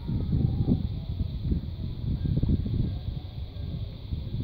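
Wind buffeting the microphone: an uneven, gusty low rumble, with a faint steady hiss above it.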